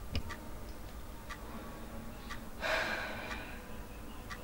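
A clock ticking faintly about once a second, with a sharp breath about three seconds in.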